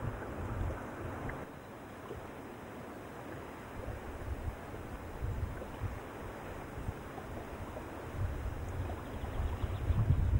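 Wind blowing across open lake water, buffeting the microphone in gusts of low rumble, over a steady rush of small waves.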